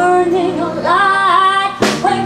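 A woman singing a live lead vocal with the band, her held notes wavering and rising in pitch about a second in. A single sharp hit sounds near the end.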